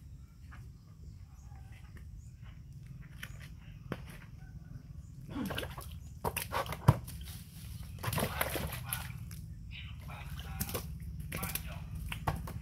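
A small monkey scrambling out of a plastic basin of water and leaping onto a large ceramic jar: splashes, scuffles and knocks, with the loudest sharp thud about seven seconds in, over a steady low hum.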